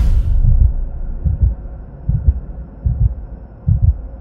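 Outro sound effect: a whoosh fades out, then deep heartbeat-like thumps in close pairs repeat about every 0.8 seconds.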